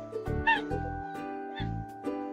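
Short, high-pitched squeals of excitement muffled behind hands, about half a second in and again near 1.6 s, over background music with a steady beat.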